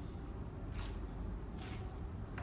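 Two short rasps of sports tape being pulled off the roll, about a second apart, over a steady low hum.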